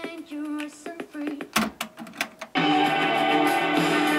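Music played back from cassette on a Philips FC931 deck: a sung melody over light accompaniment. About two and a half seconds in, it cuts abruptly to a louder, fuller piece of music.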